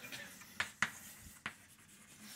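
Chalk writing on a blackboard: faint scratching of the chalk, with three short, sharp taps as it strikes the board.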